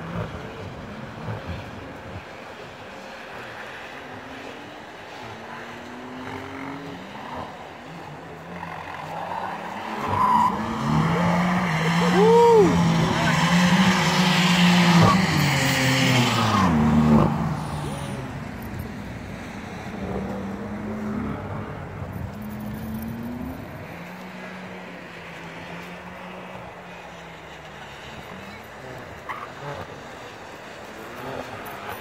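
BMW M3 driven hard on a track, engine rising and falling through the gears with tyres squealing as it slides. It is distant at first, grows loud as it passes about halfway through, drops off sharply, and is then heard far off again.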